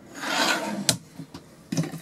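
Caravan overhead locker door with a wood-effect front swinging shut with a rubbing scrape, then the catch closing with a sharp click about a second in.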